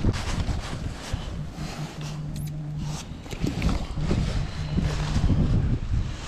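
Clothing rustling and ice-fishing gear being handled, with scattered clicks and knocks as a sonar transducer pole mount is set into a freshly chiseled ice hole. A faint low hum comes and goes twice.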